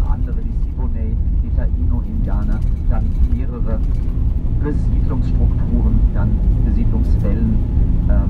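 Steady low rumble of a moving coach bus, heard from inside the cabin through a phone's microphone, with a voice speaking in short snatches over it.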